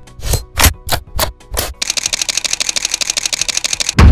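Intro sting sound effects: five sharp percussive hits in quick succession, then a rapid, even ticking roll of about ten ticks a second building up toward the logo reveal.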